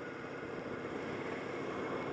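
Steady wind and running noise of a moving motorcycle, an even hiss and rumble with no distinct engine note, slowly growing a little louder.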